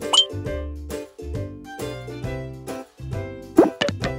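Light children's cartoon background music, with a short upward-sliding sound effect at the very start and a louder, quick up-and-down pop effect about three and a half seconds in, as a gift box springs open.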